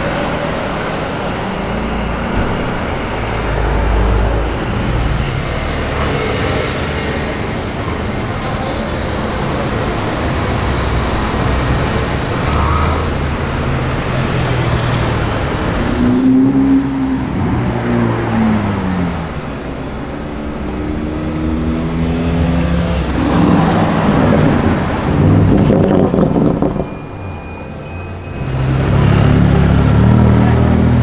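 Car engines on a city street as cars drive past one after another. About halfway through, an engine's pitch climbs in steps through gear changes and falls back. Near the end it dips briefly before a louder pass.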